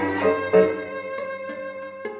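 Bowed strings (violin, viola and cello) playing sustained notes in a contemporary chamber piece. There is a strong attack about half a second in, then the sound slowly fades toward the end.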